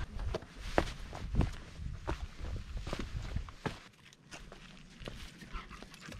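Footsteps crunching and knocking over rocks and dirt in an irregular, uneven rhythm, growing quieter after about four seconds.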